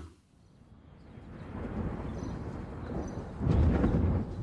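Thunder rumbling: a low roll that swells gradually and is loudest near the end.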